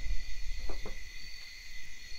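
Crickets trilling steadily at several high pitches, with a low rumble underneath and two faint clicks a little before the middle.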